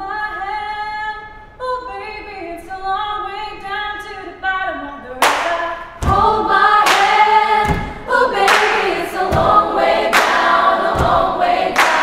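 Female choir singing a cappella in sustained harmony. About five seconds in, a percussive beat of claps and low thumps joins the singing, roughly one hit every 0.8 seconds.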